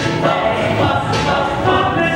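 Choir singing a pop song, with a steady beat under the voices.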